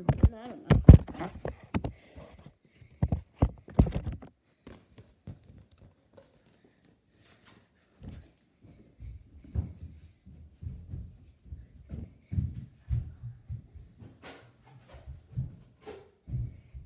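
A series of sharp knocks and thumps, loudest in the first four seconds, then softer low irregular thumps from about halfway on.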